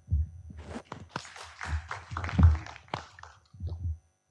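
Audience applauding, a dense patter of claps that dies away near the end, over dull low thumps, the loudest a little past the middle.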